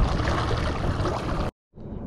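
Water rushing and churning in the prop wash behind a Minn Kota Endura 30 lb-thrust electric trolling motor as the boat runs at speed, a steady noisy wash that cuts off abruptly about one and a half seconds in.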